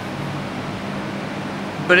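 Steady background hiss with a faint low hum, like a running fan; a man's voice starts just at the end.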